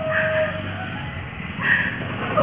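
A woman singing unaccompanied. A held note fades out in the first half second, leaving a short pause with faint room hum. Her voice comes back briefly near the end.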